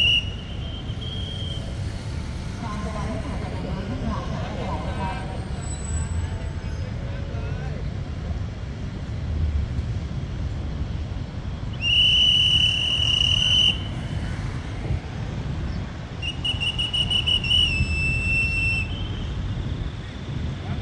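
A high-pitched whistle blown in long, steady blasts: one just ending at the start, one of almost two seconds about twelve seconds in, and a longer one about sixteen seconds in that dips slightly in pitch near its end. Beneath it runs the low, steady rumble of a diesel locomotive approaching slowly.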